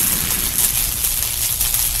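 Intro sound effect: the long, noisy tail of a crash-like impact, a steady hiss that slowly fades and cuts off suddenly at the end.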